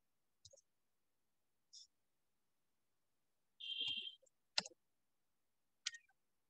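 A few sharp clicks, the plainest near the end, with a brief hiss a little past halfway, set against near-silent, gated audio.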